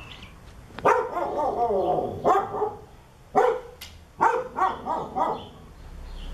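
A dog barking: a longer drawn-out bark about a second in, then a string of shorter barks in quick succession in the second half.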